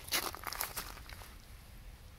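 Faint footsteps crunching over frost- and snow-dusted stubble ground, a few steps in the first second, then quieter.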